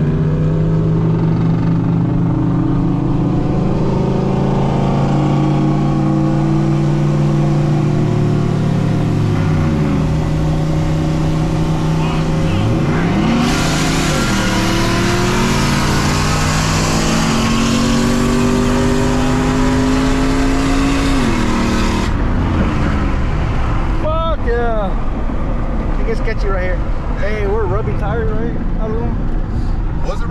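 Pickup truck V8 at wide-open throttle, heard inside the cab, pulling hard through the gears. The engine note climbs, drops at shifts about ten and thirteen seconds in, then climbs again under a loud rushing hiss. Both fall away a little past twenty seconds.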